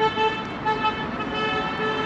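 A car horn tooting over and over in short and longer blasts, all on one steady pitch.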